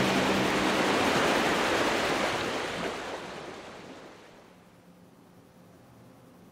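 A steady rushing noise like breaking surf, with the last low note of the soundtrack music dying away in the first two seconds; the rush fades out from about halfway through, leaving faint room tone.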